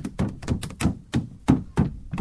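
A run of evenly spaced knocks, about three a second.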